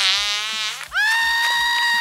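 A high-pitched scream that falls in pitch at first, then holds one steady shrill note for over a second.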